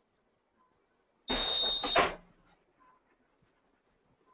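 Geo Knight DK25SP air-assist swing-away heat press finishing its press cycle: a short hiss of released air with a steady high beep over it, starting suddenly about a second in and ending under a second later as the press opens.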